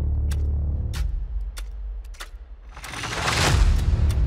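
Cinematic logo-intro sound design: a deep bass drone with sharp percussive hits about every two-thirds of a second, then a rising whoosh that swells to the loudest point just before the logo lands.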